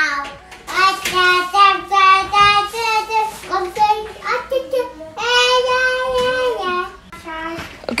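A young child singing in a high voice, a string of held notes with short breaks, the longest one held for about a second starting about five seconds in.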